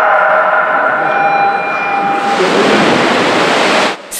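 Swimming race start in an indoor pool: a steady multi-pitched start tone held for about two and a half seconds, then a loud rush of splashing water as the swimmers race down the lanes. The sound cuts off suddenly at the end.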